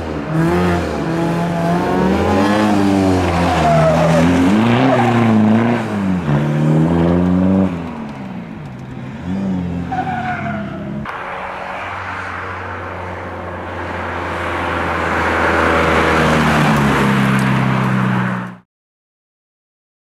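Škoda Fabia rally car's engine revving hard, its note swinging up and down again and again through gear changes and lifts. After a break the engine runs steadier, then rises again and cuts off abruptly shortly before the end.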